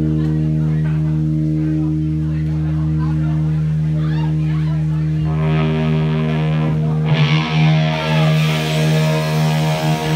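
Amplified electric guitar and bass holding a sustained distorted chord that rings steadily. About five seconds in more notes join, and near the end a bright hissing wash comes in over it.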